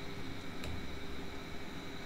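Steady low background hiss and hum of the room and microphone, with one faint click about two-thirds of a second in.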